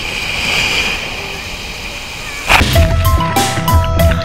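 Steady wash of small waves on a sandy beach, then about two and a half seconds in, background music cuts in: a marimba-like melody over drums and bass.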